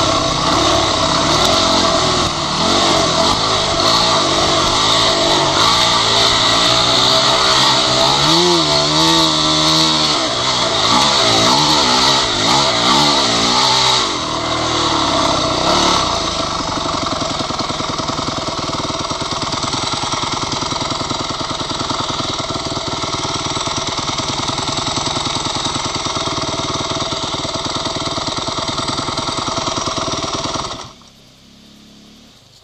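Dirt bike engine heard close-up while riding a trail, the throttle opening and closing so the pitch rises and falls repeatedly in the first half. From about sixteen seconds in it runs steadier and a little quieter.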